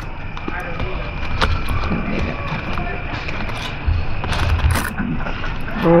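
Forks clicking and scraping on plates and opened aluminium foil as two people eat, a few sharp clicks standing out over a low rumble and a thin steady high tone.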